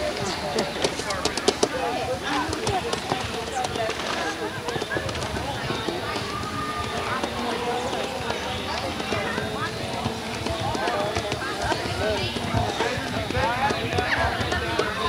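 Indistinct, overlapping chatter of several people talking at once, with a few sharp clicks in the first couple of seconds.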